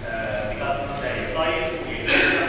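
A man talking to an audience over a microphone in a large hall.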